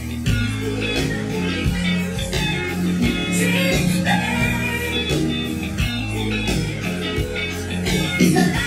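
Live rock band playing a song, with electric guitar to the fore over a steady bass and drum beat.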